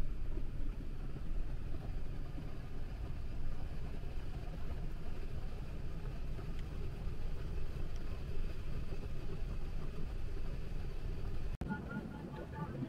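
Steady low rumble of an airliner cabin in flight, the drone of the engines and the air rushing past. It cuts out for an instant near the end.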